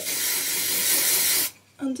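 Aerosol dry shampoo (Living Proof Perfect Hair Day Advanced Clean) sprayed onto the hair roots in one continuous hiss of about a second and a half, which cuts off sharply.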